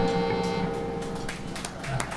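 A blues band's final chord ringing out and fading away, the sustained keyboard and guitar notes dying down, with a few scattered handclaps coming in over the second half.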